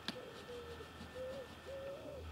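A pigeon or dove cooing faintly: a run of short, low, even coos about every half second. A single sharp click sounds just after the start.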